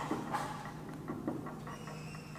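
Marker pen scraping on a whiteboard in a few short strokes, over a faint steady room hum.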